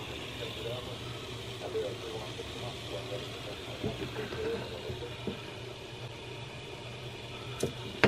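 Dapol class 73 OO gauge model locomotive running on a rolling road: the small electric motor and its cardan-shaft and worm gear drive give a steady low hum with a thin high whine, and there are a few faint clicks partway through. It is drawing about 220 milliamps under light load, which the owner suspects means a weak motor.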